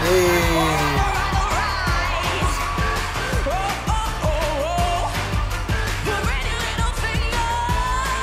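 A rock song performed live: a teenage girl's lead vocal sliding up and down in pitch over a band, with drums keeping a steady beat.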